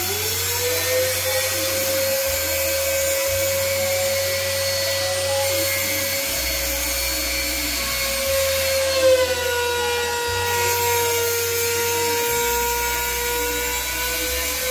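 Trim router spindle of a CNC router, spinning at about 30,000 rpm, giving a steady high whine that rises as it spins up at the start and dips slightly in pitch about two-thirds in as it carves into a small wooden block. Underneath, a low hum from the axis drive motors shifts every second or two as the gantry moves.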